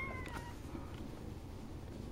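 A newborn kitten's thin, high mew, falling slightly in pitch and trailing off about half a second in, then only faint background noise.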